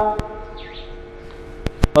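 A man's chanted Quran recitation ends on a held note right at the start, followed by a pause with a faint steady hum and three short clicks.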